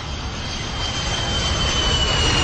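A rushing noise that swells slowly, with a thin high whine gliding gently down in pitch: a dramatic whoosh-like sound effect.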